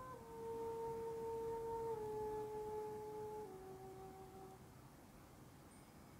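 Soft background music for meditation: a single held, pure tone that steps down in pitch three times and fades out about halfway through.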